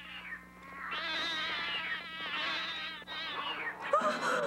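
Several animals howling together as a cartoon sound effect: wavering, overlapping calls that swell about a second in and fade just before the end.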